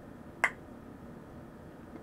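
A single short, sharp click a little under half a second in, against faint room tone.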